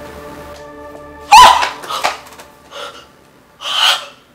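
Dramatic film-score tones held steady, broken about a second and a half in by a woman's sudden loud shriek that rises briefly in pitch. A second loud, breathy cry or gasp comes near the end.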